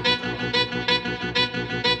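Instrumental passage of a turreo RKT dance remix: a held chord over a steady beat pulsing about four times a second.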